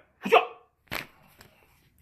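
A man's short murmured, hiccup-like syllable, then a single sharp click about a second in and a faint tick just after.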